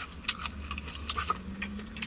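Chewing a mouthful of extra crispy fried chicken: an irregular run of crisp crunches from the breading.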